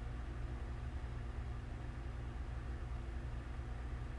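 A steady low hum with a faint hiss underneath, unchanging throughout: background room noise from a running appliance or electrical hum.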